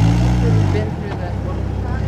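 Mud-covered Jeep's engine pulling away over dirt, its pitch rising briefly at the start and then easing off to a steadier, lower running note.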